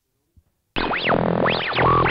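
Electronic transition sting: synthesizer music with repeated rising-and-falling pitch sweeps over steady low tones, coming in loud about three-quarters of a second in.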